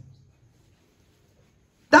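A pause in a man's speech: his voice fades out at the start, near silence follows for about a second and a half, and he starts talking again near the end.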